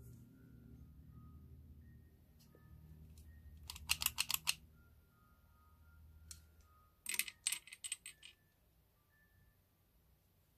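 Metal clicks from a WE Tech M9 airsoft pistol's hammer and safety/decocker lever being worked: a quick run of clicks about four seconds in and another about seven seconds in, each with a faint metallic ring.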